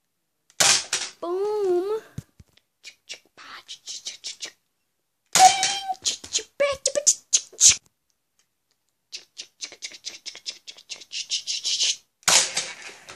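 Nerf AccuStrike Sharpfire dart blaster being handled, loaded and fired: plastic clicks and clacks from pulling a dart from the stock's dart storage, loading and priming, and a few sharp loud snaps. A short wavering pitched sound comes about a second in, and a quickening run of clicks builds near the end.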